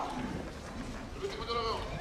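A lull in the talk with low background noise, broken about one and a half seconds in by a short, wavering voice whose pitch rises and falls.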